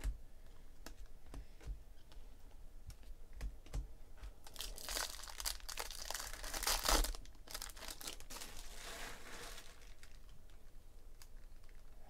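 Light clicks of trading cards being flipped in the hand, then, about halfway through, the wrapper of a Bowman Chrome card pack being torn open and crinkled for a few seconds, followed by a softer rustle.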